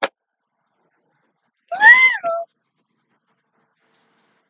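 A single meow from a domestic cat, about two seconds in, rising and then falling in pitch and ending on a short held note.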